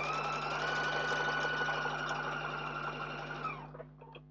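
Electric sewing machine stitching a seam in one continuous run. Its motor whine rises as it speeds up, holds steady, then falls away as it stops after about three and a half seconds.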